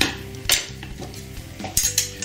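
A metal slotted spoon clinking against a cooking pot and a wooden cutting board as a boiled potato is lifted out and set down. There are a few sharp clicks: one about half a second in, then a quick pair near the end.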